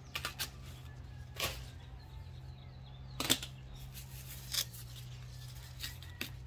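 Hand pruners snipping colocasia (elephant ear) stalks: a handful of sharp clicks at irregular intervals, the loudest about a second and a half in and just past three seconds in.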